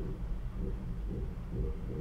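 Underwater sound picked up by a hydrophone as smoothie pours out of an upturned plastic bottle: a steady low rumble with soft pulses about twice a second.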